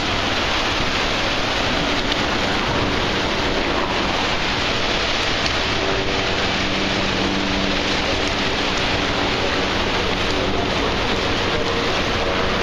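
Steady loud rush of turbulent white water in the river below the falls, unbroken throughout, with a faint low hum beneath it.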